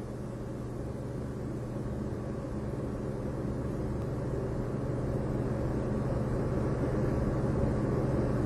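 Steady low hum with hiss, slowly growing louder: the background noise of an old recording.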